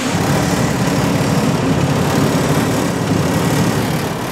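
Diesel engine of a grain semi truck running steadily while the truck backs up, heard from inside the cab.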